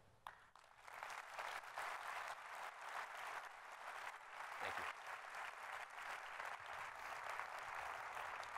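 Audience applauding, building over the first second and then holding steady.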